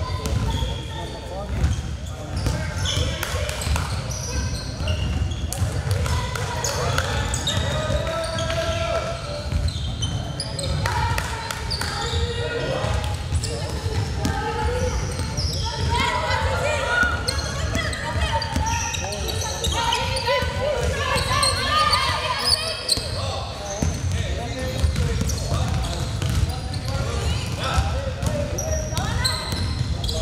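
A basketball being dribbled on a hardwood court: repeated sharp bounces throughout, with players' indistinct shouts and calls over them.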